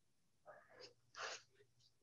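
Near silence with two faint, short breathy sounds, about half a second and a little over a second in: a person drawing breath.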